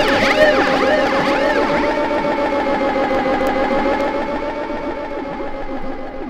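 Instrumental stretch of a new wave/post-punk song played from a vinyl record: electronic, siren-like swooping pitch sweeps over held tones, the sweeps dying away after a couple of seconds as the music slowly gets quieter.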